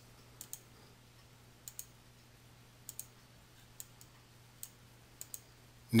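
Computer mouse clicking about ten times at irregular intervals, some clicks in quick pairs, over a faint steady hum.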